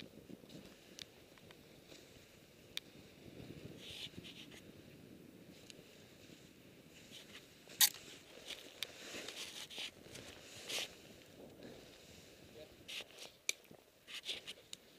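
Faint low rush of movement over snow, with scattered scrapes and clicks from gear and clothing. The loudest, a sharp scrape, comes about eight seconds in, and another scraping burst comes near eleven seconds.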